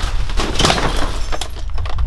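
A heavy cardboard box packed with clothes is yanked out of a tightly stacked pile: a sharp knock, then about half a second of crunching and scraping of cardboard and plastic bags, and a few more knocks as it comes free. It sounded a lot worse than expected.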